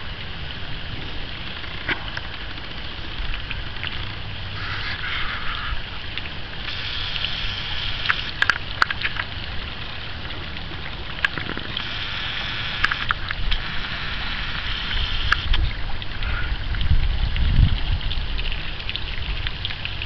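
Small fountain jet in a garden pond splashing into the water, a steady hiss of falling spray that grows louder for several seconds in the middle, with low wind rumble and a few sharp clicks.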